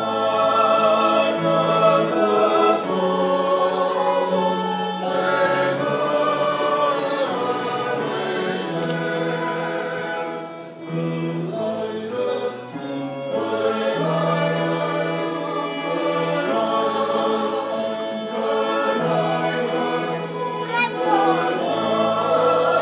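Church choir singing a Romanian hymn with a small ensemble of violins and flutes accompanying. The singing and sustained instrumental notes run on continuously, with a short drop in loudness between phrases about ten and a half seconds in.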